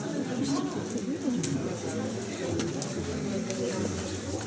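Indistinct chatter of several people talking at once in a room, with a few light clicks.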